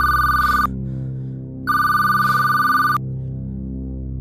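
Telephone ringing: two rings of a steady two-pitch electronic tone about a second apart, over a steady low drone of background score.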